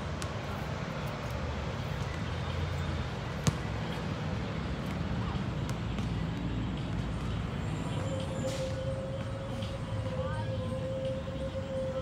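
Outdoor city background: a steady low traffic rumble with distant voices and a few sharp knocks, the loudest about three and a half seconds in. A steady humming tone joins about eight seconds in.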